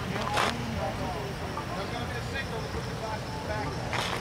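Background chatter of people talking, not close to the microphone, over a steady low rumble. A short rustle or scrape comes about half a second in.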